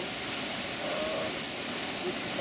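Steady hissing rush of steam venting from a geothermal hot spring.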